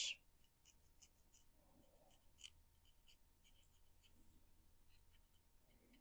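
Near silence, with faint light scratches of black paint being dabbed along the edges of a small wooden pallet.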